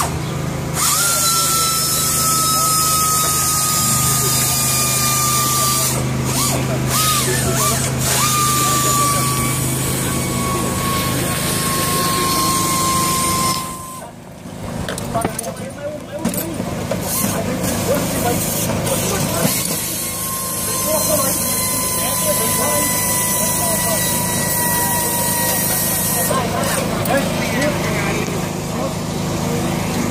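Mechanics working under a rally car, with hand tools clinking and knocking, voices talking and a steady mechanical hum. A faint whine slowly drops in pitch over several seconds, twice.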